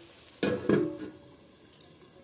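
A steel plate is set down over a steel kadai as a lid with a brief metallic clatter about half a second in. After that, the frying of the masala underneath goes faint.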